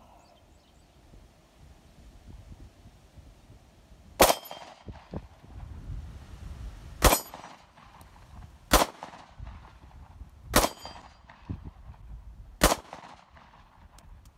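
Five 9mm shots from a SIG Sauer P938 SAS Gen 2 micro-compact pistol, fired one at a time at an uneven pace roughly two seconds apart, the first about four seconds in.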